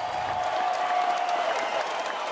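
Audience clapping and applauding steadily.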